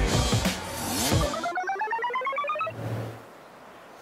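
Edited-in electronic sound effect: a rapid run of short beeping tones climbing steadily in pitch, like a ringtone-style riser marking a transition. It follows a loud, noisy first second and ends in a brief low hum before the sound drops away.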